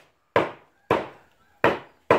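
Knife chopping raw eel on a round wooden chopping block: three sharp chops, a little over half a second apart.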